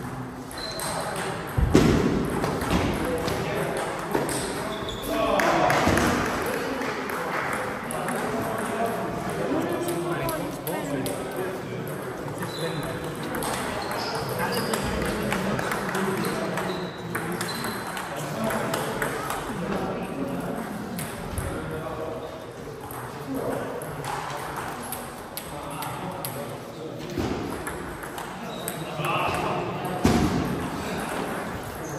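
Celluloid-type table tennis balls clicking off bats and the table in rallies, a quick run of short knocks, over indistinct voices talking in a large hall. A sharper knock stands out about two seconds in.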